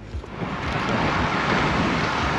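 Wind rushing over a bike-mounted camera's microphone, with road noise, while riding. It swells up about half a second in and then holds steady.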